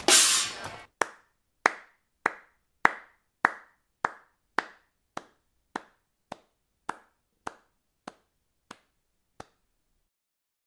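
The music ends on a loud final hit that dies away within the first second. Then a single person gives a slow handclap: about fifteen lone claps, a little under two a second, getting fainter and stopping shortly before the end.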